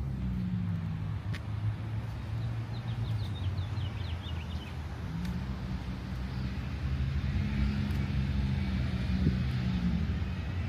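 A low, steady engine drone from a motor vehicle, its pitch shifting about halfway through, with a short run of high chirps in the first half.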